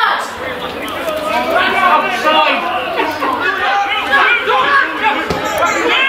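Several indistinct voices of footballers and spectators talking and calling out over one another at a small amateur football ground, with one dull thump near the end.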